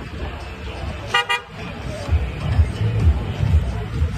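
A vehicle horn gives a short double toot about a second in, over background music with a bass beat.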